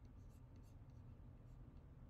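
Near silence: faint room tone with a low hum and a few faint ticks.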